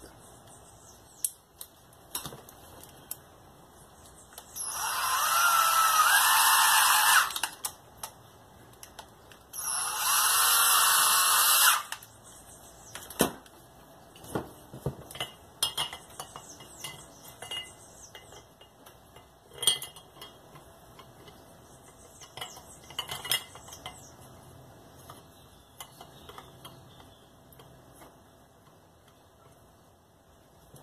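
An electric power-tool motor runs in two short bursts, the first about three seconds long and the second about two, a few seconds apart, with a whine that shifts a little in pitch. Afterwards come scattered small clicks and knocks of parts being handled.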